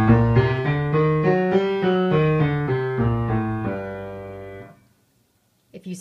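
A harmonic minor scale played on piano, one note at a time, up and back down. The notes fade out just under five seconds in.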